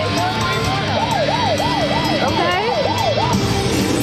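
Quick Hit video slot machine playing an electronic warbling sound effect, a tone rising and falling about three times a second for a couple of seconds, with quick rising sweeps near the middle. Casino background music plays underneath.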